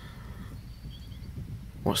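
Quiet open-field ambience: a steady low rumble with a few faint, short high chirps about a second in. A man's voice starts near the end.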